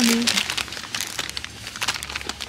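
Plastic wrapping of seasoned seaweed snack multipacks crinkling as the packs are pulled off a wire shelf and handled. The crinkling is loudest near the start, then sporadic.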